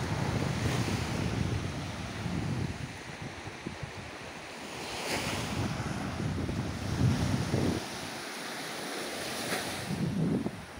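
Small waves washing up onto a sandy shore, with wind buffeting the microphone in gusts, the strongest about seven seconds in.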